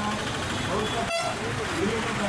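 Roadside traffic with a vehicle horn tooting, motorbikes and auto-rickshaws passing, under people's voices. The sound breaks off for an instant just past a second in.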